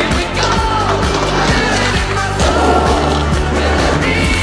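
Music track with a steady bass line and a melody that slides in pitch, with the clacks and rolling of a skateboard mixed in.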